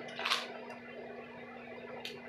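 A chip bag being handled and lifted to the nose to be smelled, with one brief rustling noise about a third of a second in, over a faint steady hum.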